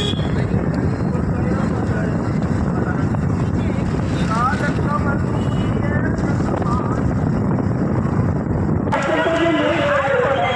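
Steady rumble of a moving motorcycle with wind on the microphone, heard from the pillion seat. About nine seconds in, voices come in over it.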